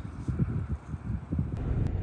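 Wind buffeting the microphone outdoors, an uneven low rumble that rises and falls in gusts.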